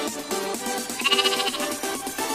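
A lamb bleats once, a wavering call about half a second long, about a second in, over upbeat electronic dance music.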